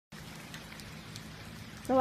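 Steady rain falling, an even hiss with a few separate drops ticking.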